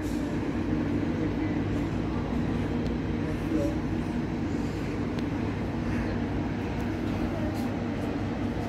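Israel Railways double-deck passenger train standing at the platform, running with a steady low hum.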